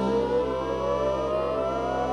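Theremin playing one slow, smooth upward glide in pitch over a steady low drone.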